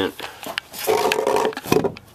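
Handling noise from a black plastic pipe elbow on a prop boiler being twisted upright: a few knocks, then a short rubbing squeak about a second in, and more knocks near the end.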